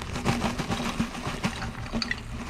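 Pieces of dried, dehydrated food rattling and pattering out of a plastic vacuum bag into a narrow stainless steel flask, with the plastic bag crinkling in the hands. A steady background hum runs underneath.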